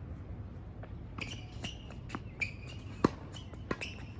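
Tennis ball being served and rallied on a hard court: a string of sharp pops from racket strikes and bounces, the loudest about three seconds in. Short high squeaks of shoes on the court come between the hits.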